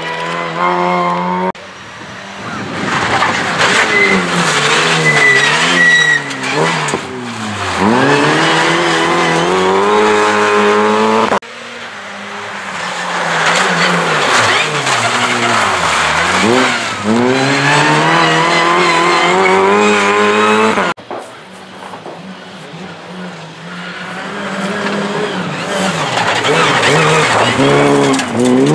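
Opel Adam rally cars passing at speed one after another, engines revving hard and climbing in pitch between gear changes, with the pitch dropping and rising again as each car goes by. The sound cuts off abruptly three times where one pass gives way to the next.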